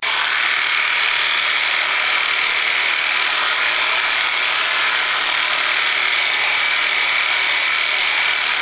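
Theragun percussive massage gun running at its default speed: a loud, steady mechanical buzz with a high whine that holds unchanged.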